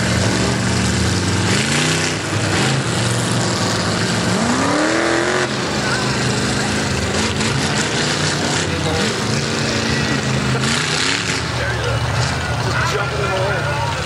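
Mud-racing truck engines idling with a steady low drone and revving up now and then, the biggest rev rising about four to five seconds in.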